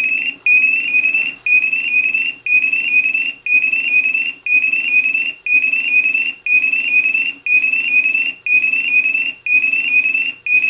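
Honeywell IQ Force portable gas monitor sounding its alarm: short, high, rising chirps repeating about twice a second with a low buzz underneath, breaking briefly once a second. Its sensors are in alarm from test gas applied during a bump test.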